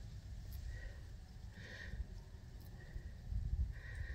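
Quiet outdoor background: a low rumble with a few faint, brief high tones.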